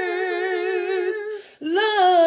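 A woman singing a cappella, holding one long note with vibrato. The note fades about a second and a half in, and after a brief breath she slides up into a new note.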